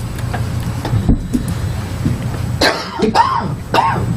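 A person at a microphone coughing and clearing her throat, three short bursts in quick succession starting about two and a half seconds in, over a low steady hum.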